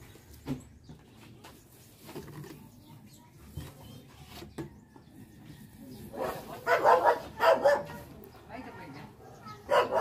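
A dog barks several times in quick succession about two-thirds of the way in, after a quieter stretch of a few light clicks from plastic bottles and caps being handled.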